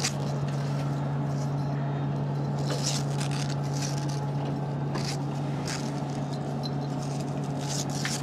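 Steady low hum and air noise of the International Space Station's cabin ventilation and equipment, with a few light clicks and rattles as the ARED exercise machine is handled and set up.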